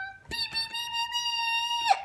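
Car-horn honk: the tail of a short lower note, then one long, steady, higher honk lasting about a second and a half that cuts off suddenly.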